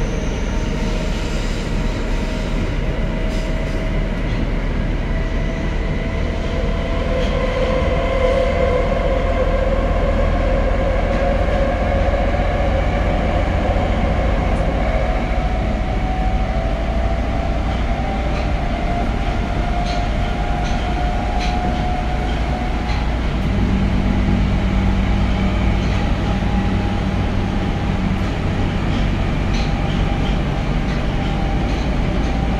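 Tokyo Metro 02 series subway car running, heard from inside: a steady rumble of wheels on rail with a motor tone that climbs slowly in pitch as the train gathers speed. A low steady hum joins it about three-quarters of the way through.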